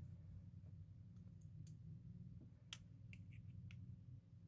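Near silence over a low steady hum, with a few faint short clicks and taps, the clearest about two thirds of the way through and a small cluster just after it.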